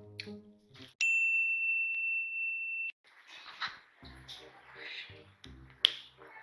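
A single bright ding, an editing sound effect at a scene change, ringing at one steady pitch for about two seconds and then cutting off sharply. Quieter background music with a regular beat follows.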